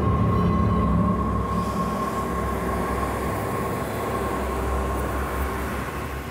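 Dramatic horror sound design: a loud, dense rumble with a steady high tone held through it, fading slightly toward the end.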